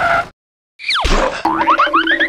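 Cartoon sound effects: a quick falling whistle that ends in a low thud about a second in, then a rapid run of rising boing-like chirps over a steady low tone.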